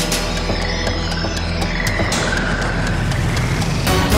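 Electronic theme music over the programme's animated titles: a steady low drone under a dense electronic texture, with a whooshing sweep about halfway through and a sharp hit at the very end as the logo appears.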